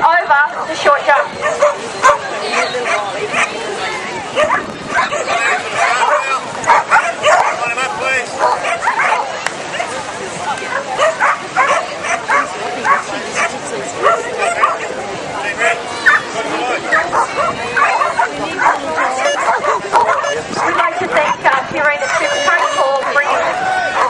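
Several dogs barking and yipping over and over, short sharp barks coming thick and fast, with the chatter of a crowd of people underneath.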